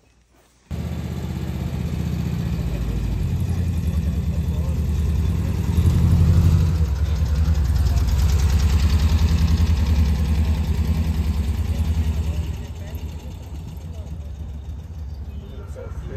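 Volkswagen Kombi van's engine running close by, coming in suddenly about a second in, louder through the middle and dropping back after about twelve seconds.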